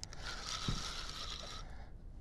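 Fixed-spool spinning reel whirring for about a second and a half while a hooked fish is played on a bent rod, with a dull knock partway through.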